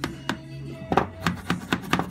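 Light hammer taps on glass set in lead came, seating the piece into the lead's channel: a run of sharp taps from about halfway through. Music plays in the background throughout.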